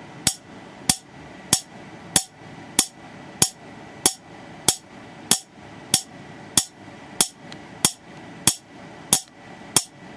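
Water-drop-triggered air spark gap discharging a 4 nF capacitor: a sharp snap each time a falling drop triggers the arc, at a steady rhythm of a little under two a second. Each snap marks the arc blowing up or vaporizing most of the water in the drop as it falls through the gap.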